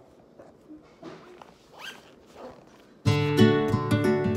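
Faint rustling and handling of a bag and fabric during packing, then about three seconds in, background music with a plucked acoustic guitar starts abruptly and is much louder.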